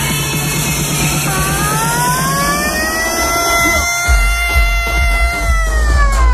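Loud electronic dance music from a DJ set over a club PA. A synth line glides upward about a second in and holds. A deep bass comes in about four seconds in.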